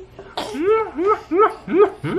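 A baby laughing in a quick run of short bursts, about three a second, after a short breathy burst about a third of a second in.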